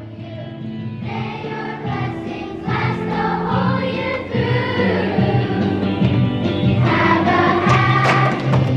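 Children's choir singing a Christmas song over an instrumental accompaniment, growing louder as it goes. Near the end the singers start clapping along in rhythm.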